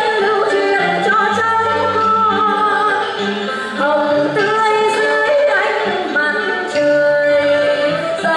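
A woman singing a Vietnamese stage-opera melody, holding long notes that waver in pitch, with steady lower notes sounding beneath the voice.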